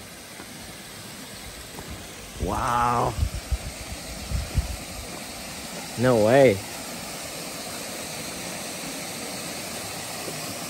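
Steady rush of a small desert waterfall and creek, growing a little louder as it is approached, with a few low thumps in the middle and two short voiced exclamations.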